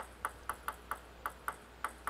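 A table tennis ball bounced repeatedly on the table before a serve: short, light pings at about four a second.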